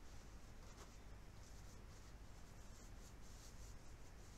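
Faint scratching of a drawing tool on paper in short, irregular strokes, over a low steady room hum.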